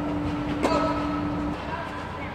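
A tennis ball struck by a racket on an indoor clay court, one sharp hit about two-thirds of a second in, over a steady hum that cuts off about a second and a half in.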